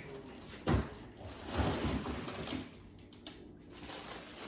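A cardboard box being put into an open refrigerator: a knock under a second in, then about a second of handling and shuffling noise, quieter near the end.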